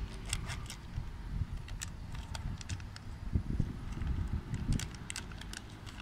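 Plastic snack bag of ginger-and-mango chews crinkling and crackling in the hands as it is torn open, in many short sharp crackles. A low rumble runs underneath.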